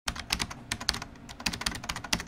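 Keyboard typing sound effect: quick, irregular key clicks, about eight to ten a second.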